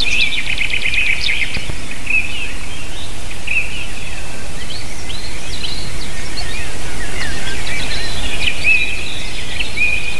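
Wild birds singing and calling, with many short chirps and whistled notes and a fast run of repeated high notes in the first second and a half. Underneath is a steady low background noise.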